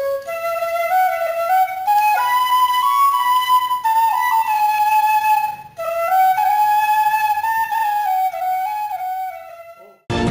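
Background music: a slow solo flute melody, a single line of held and gliding notes. It breaks off briefly a little past halfway and fades out near the end.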